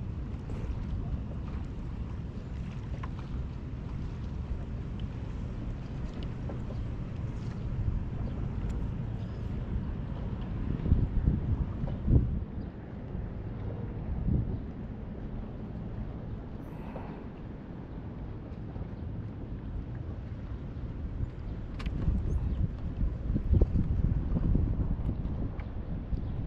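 Wind buffeting a microphone low over choppy river water from a kayak, a steady low rumble with the chop of the water beneath it. Louder gusts come about halfway through and again near the end.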